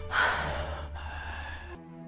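A person's loud, breathy gasp that comes on suddenly just after the start and trails off into breathy noise, over a low hum, ending abruptly near the end.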